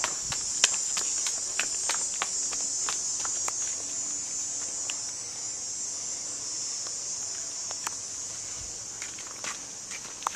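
Steady high-pitched chorus of insects, with irregular footsteps and small clicks of someone walking through grass.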